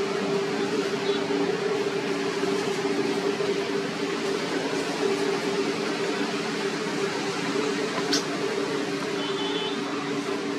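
A steady low hum made of a few level tones over an even hiss, unchanging throughout, with a single sharp click about eight seconds in.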